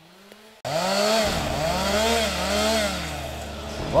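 Chainsaw cutting brush and a small tree, coming in suddenly about half a second in, its engine revving up and down as it bites through the wood.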